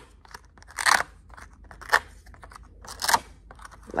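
Laminated paper frog cutouts being peeled off and pressed onto hook-and-loop (Velcro) dots on a laminated board: a few short scratchy rasps about a second apart.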